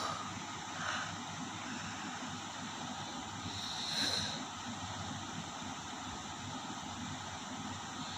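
Steady background noise with no clear source, and a faint short sound about four seconds in.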